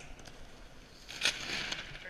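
A BASE jumper's parachute canopy opening below the bridge: a sudden rush and snap of fabric catching air, loudest at the start, about a second and a quarter in, and dying away within under a second.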